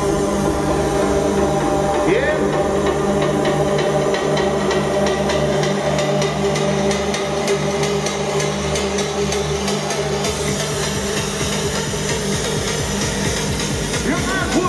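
Progressive house music from a DJ set played loud over an arena sound system: held synth chords over a steady bass. Rapid repeated drum hits crowd together in the middle, as the deep bass thins out for a few seconds.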